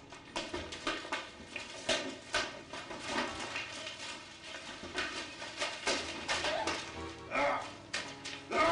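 Background music under a scuffle: repeated thuds and knocks of a fistfight, with a loud shout about seven seconds in.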